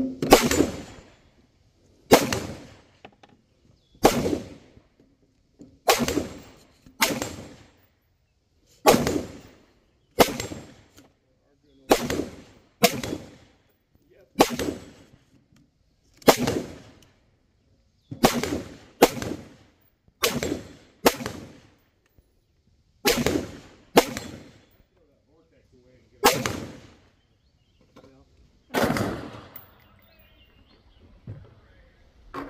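AR-15-style rifles firing single shots in a steady string, about twenty sharp reports spaced roughly one to two seconds apart, each followed by a short decaying tail.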